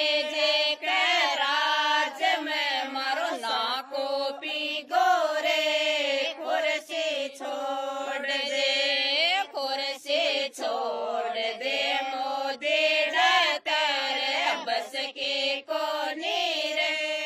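Rajasthani village women singing a folk song in the local dialect, a protest song whose refrain tells Modi to leave the chair. The voices are held in long, gliding notes.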